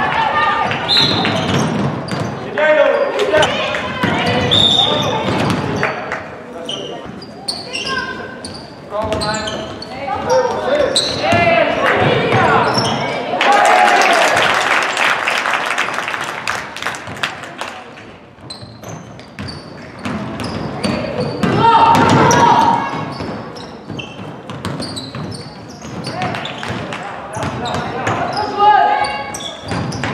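Indoor basketball game in a large gym: a ball bounces on the hardwood court while players and people courtside shout and call out throughout.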